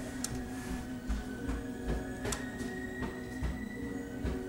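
Faint music playing, a few held tones sounding steadily, with a few light clicks over it.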